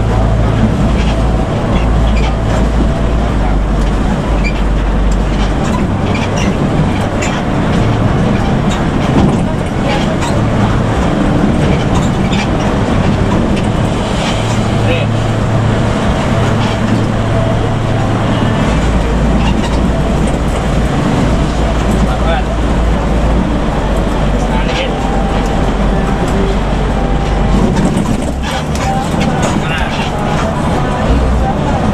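Intercity bus at highway speed heard from inside the cabin: a steady low engine drone with tyre and road noise.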